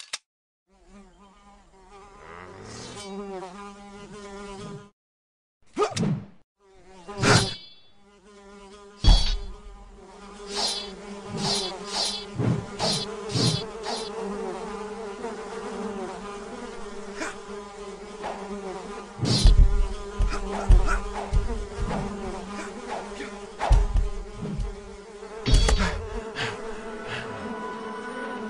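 An insect's buzz, wavering in pitch, runs steadily under a string of sharp swishes and strikes that begin about nine seconds in. Several heavy thuds bunch together around the twentieth second and come again twice near the end, fitting a katana being swung and struck into a wooden floor.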